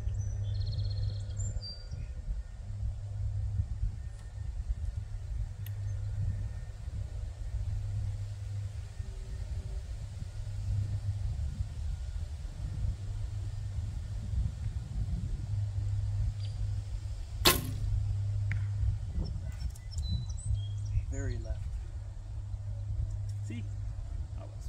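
Barebow recurve shot once, well past the middle: a single sharp snap of the string at release. A low steady rumble of wind on the microphone runs underneath.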